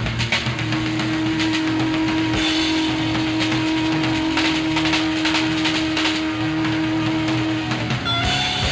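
A rock band of electric guitars, keyboards and drums playing an instrumental blues-rock jam live. One note is held steady for about seven seconds while drums and cymbals keep time underneath.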